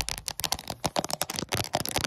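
Fingernails and fingertips tapping and scratching right against the camera microphone: a fast, uneven run of crisp clicks and scratches.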